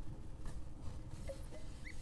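Cloth towel rubbing and wiping a glass mason jar dry, with a couple of brief squeaks of the cloth on the glass in the second half.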